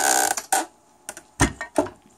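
Handling noise at a sewing machine: a brief rubbing scrape, then a few short, sharp clicks and knocks about a second in.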